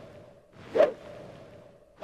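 A single quick whoosh about a second in, swelling and then falling away, over a low hiss.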